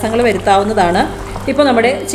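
A woman speaking, with some drawn-out sliding tones, over a steady low hum that fades out near the end.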